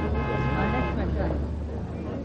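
A vehicle horn sounds once for about a second over a low, steady traffic rumble that fades out near the end.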